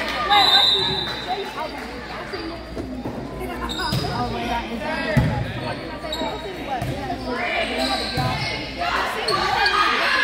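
A referee's whistle sounds briefly to start the serve, then the volleyball is struck a few times in a rally, with the sharp hits ringing in the gym over continuous crowd and player voices.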